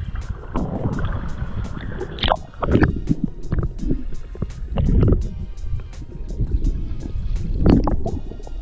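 Sea water sloshing and a muffled underwater rumble as a waterproof action camera dips below the surface while swimming, with heavier splashing surges about two and a half seconds in, around five seconds, and near the end. Background music plays underneath.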